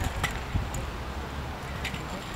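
Kick scooter's small wheels rolling on a concrete skatepark surface: a low rumble with a few light clicks.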